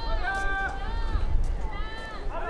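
Several drawn-out shouted calls from voices, one held steady for about half a second, over a low rumble.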